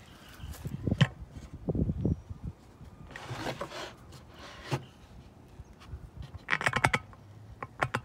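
Irregular handling noises: a few low thumps in the first couple of seconds, a soft rustle, then a quick run of sharp clicks and knocks near the end as a hand reaches for a wooden birdhouse.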